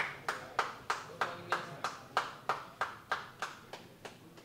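Rhythmic hand clapping, evenly timed at about three claps a second, growing weaker near the end.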